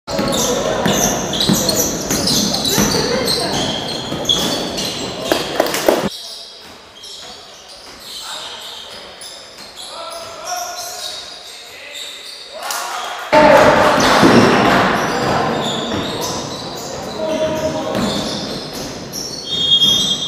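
Indoor basketball game sounds in a large, echoing sports hall: players' voices and a basketball bouncing on the floor. There is a quieter stretch in the middle, and a sudden loud surge of noise about two-thirds of the way through.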